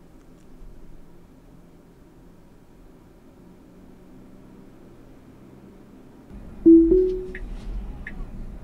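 Quiet car-cabin hum, then, near the end, a short two-note rising chime from the Tesla as Auto Park engages. It is followed by faint ticks about every three-quarters of a second.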